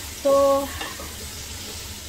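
Sliced red onions frying in hot cooking oil in a pot, sizzling steadily while a silicone spatula stirs them; the onions are at the early stage of browning toward golden brown.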